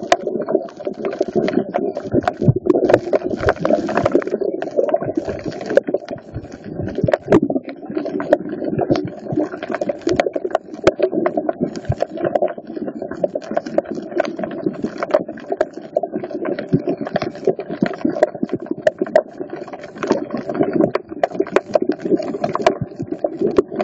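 Underwater ambience picked up by a submerged phone: a steady muffled rumble of moving water, with dense irregular clicks and crackles all through.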